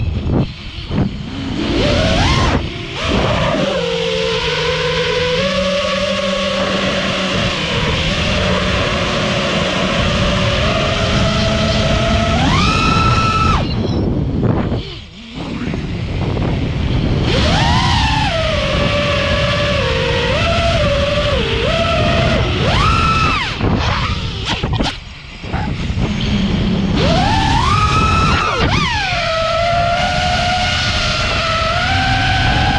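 Five-inch FPV racing quadcopter's brushless motors and propellers whining close up, the pitch swooping sharply up and down with the throttle. The whine drops away briefly twice, once near the middle and once about five seconds before the end, as the throttle is cut.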